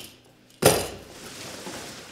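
A cardboard box being handled and pulled across a wooden floor: a sudden knock about half a second in, then rustling and scraping that fades.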